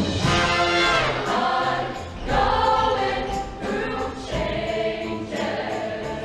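Mixed show choir singing in harmony over instrumental accompaniment with a steady beat.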